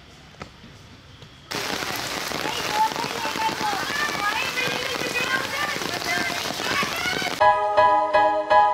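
Rain falling steadily, cutting in suddenly about a second and a half in, with children shouting and calling out over it. A music track starts near the end.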